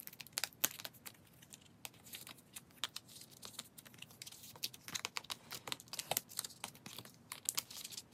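Photocards being handled and slid into a clear plastic nine-pocket binder page: an irregular run of light clicks and plastic crinkles.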